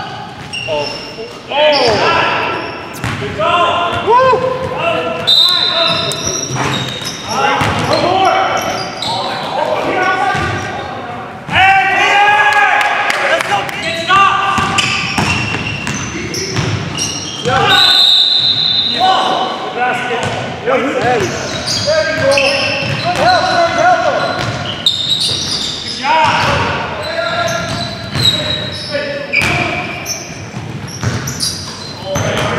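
Indoor basketball game sounds in a gymnasium: a basketball bouncing on the hardwood floor, sneakers squeaking, and players' indistinct shouts, all echoing in the large hall.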